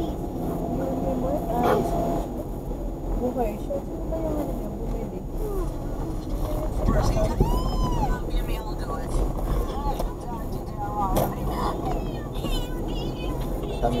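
Mostly speech: people talking and laughing inside a moving car's cabin, over a steady low hum of road and engine noise.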